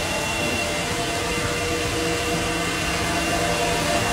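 Steady rush of cooling fans: the fans of running ASIC crypto miners and the big exhaust fans pulling hot air out of the shed, with a thin, steady high whine over the noise.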